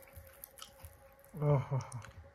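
Faint crackling and squishing of a crumb-coated fried finger fish being pulled apart by hand, its crisp crust breaking over a soft inside. A man's voice comes in briefly about one and a half seconds in.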